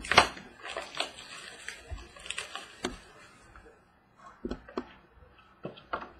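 Hands opening a shrink-wrapped trading card box. There is a sharp knock just after the start, then crinkling plastic and scattered light clicks from the packaging and card holder.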